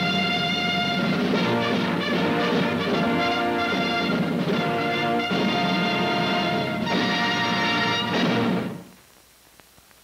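Orchestral end-title music of sustained full chords. It stops about nine seconds in, leaving faint hiss.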